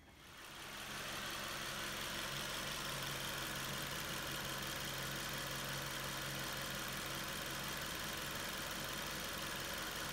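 Car engine idling steadily, fading in over the first second.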